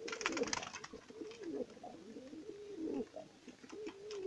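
Domestic pigeons cooing in the loft: a run of low, wavering coos, one after another. A brief flurry of rustling comes at the very start.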